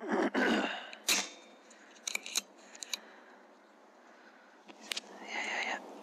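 Air rifle shot, a sharp crack about a second in, followed by several light mechanical clicks of the action being worked. Another single click comes near the end, along with a short noisy rustle.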